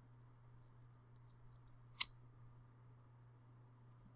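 A single sharp computer mouse click about halfway through, with a few faint ticks before it, over near silence and a faint steady low hum.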